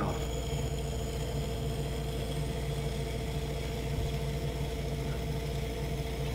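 Electric potter's wheel running with a steady hum while a metal trimming tool shaves a continuous ribbon of stiff, nearly dry clay off the spinning cylinder.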